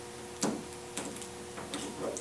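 Hands handling and taping a paper cutout and plastic drinking straws: a few short crackles and clicks, the sharpest about half a second in.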